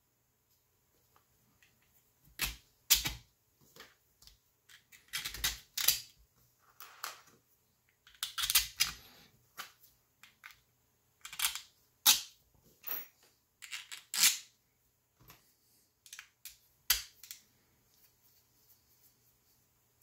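Irregular clicks and taps of steel M3 screws and 3D-printed plastic parts being handled as the screws are fitted into a printed housing, with short quiet gaps between them.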